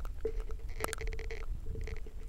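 Low rumble of wind buffeting a small camera's microphone, with a couple of light handling clicks about a second apart.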